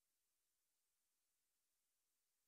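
Near silence: only a faint, steady hiss, with no music or voices.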